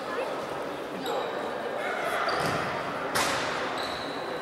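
A futsal ball is kicked once about three seconds in, a sharp thud that echoes in the sports hall, over players' voices.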